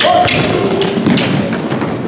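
Basketball thumping on a hardwood gym floor as it is dribbled, with players' running footsteps in a large gym. A short high squeak comes about one and a half seconds in.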